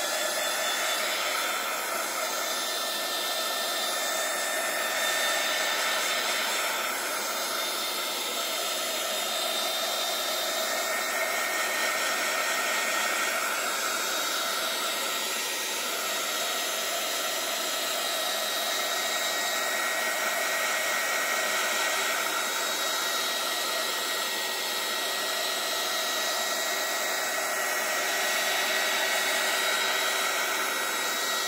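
Handheld craft heat gun running steadily, blowing hot air to dry wet watercolour paint on paper: a rush of air with a steady high whine from its fan motor.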